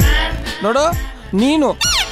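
A man's voice speaking animatedly, its pitch swooping up and down in short phrases, over background music.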